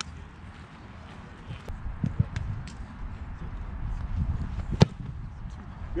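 A single sharp thud of a football struck by a placekicker's foot on a field goal attempt, about five seconds in. A steady low wind rumble on the microphone runs under it.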